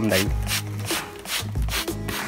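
Cloth rubbing and brushing against a phone's microphone as the phone is carried against the body, over background music with a steady beat.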